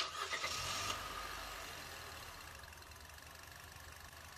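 A Nissan Kicks' 1.6-litre four-cylinder engine starting up and running on carb cleaner fed from an aerosol can in place of gasoline. It is loudest for about the first second, then settles steadily quieter toward idle.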